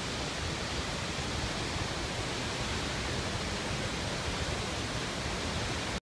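Steady rush of a tall waterfall in high flow, swollen by winter rain, with the creek running at full force below it.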